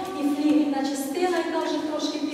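Only speech: a woman talking steadily, presenting to a seated audience.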